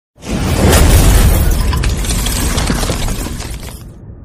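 Thunder: a sudden loud crack just after the start, rumbling on heavily and fading away near the end.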